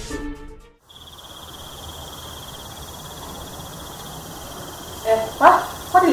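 Crickets chirring in a steady, high trill that starts about a second in, after music fades out.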